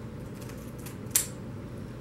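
Scissors snipping through the corner of a small crystal packet: a few faint cuts, then one sharp snip just over a second in.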